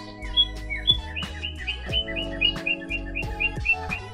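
Background music with a regular beat, overlaid by a rapid run of short, high bird-like chirps. A few come early, then about six a second until just before the end.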